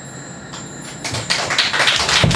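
The last notes of a live band's song fading away, then a small audience starting to clap about a second in, the clapping growing louder.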